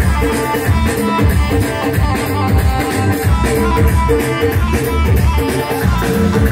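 Loud live band music played over a PA, with a steady drum beat under a repeating melodic figure.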